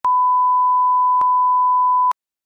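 A steady 1 kHz reference test tone, the line-up tone that goes with colour bars, holding one pitch, with a brief click a little over a second in.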